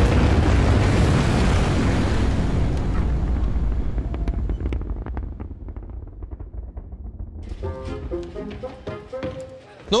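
Spaceship engine sound effect: a loud, dense rumble that fades over about five seconds into a low rumble. Background music with held tones comes in about two-thirds of the way through.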